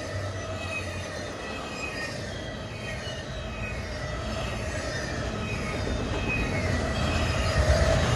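Double-stack intermodal freight train's well cars rolling past, steel wheels running on the rails with faint high steady tones over the rolling noise. It grows gradually louder toward the end.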